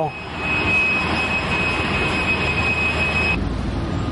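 A steady high-pitched whine over an even hiss, cut off abruptly about three and a half seconds in, after which a low rumble takes over.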